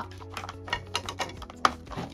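Small clicks and crinkles of plastic Mini Brands capsules and their printed wrap being handled and pulled open, with one sharper click about one and a half seconds in.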